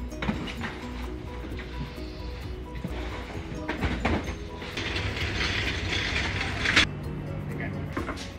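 Clattering and rattling as drink and snack cases are handled on a cargo van's metal wire shelving, with many short clicks and knocks. A rushing scrape builds about halfway through and ends in a sharp knock near the end, over background music.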